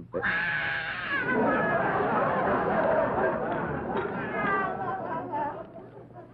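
Studio audience laughing: the laughter breaks out suddenly just after the start, many voices at once, and dies away about five seconds later.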